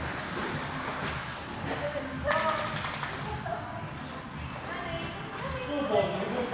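Pool water splashing and sloshing as dogs paddle and scramble out of a hydrotherapy pool, with a sudden burst about two seconds in. Voices are mixed in.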